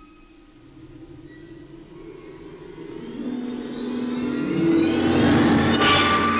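Rising synthesized swell on a film soundtrack: a low rumble with whines climbing in pitch grows steadily louder, ending in a sharp hit near the end.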